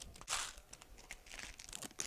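Label strip being picked at and peeled off a plastic Tic Tac container: faint crinkling and tearing, with a short louder rustle about a third of a second in.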